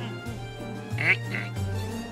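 Light cartoon background music with two short, high-pitched squeaky vocal sounds from an animated character about a second in.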